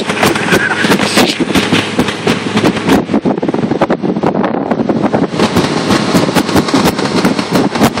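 A car moving slowly over a packed-snow road heard through an open window: a dense, rapid, irregular crackle with wind buffeting the microphone.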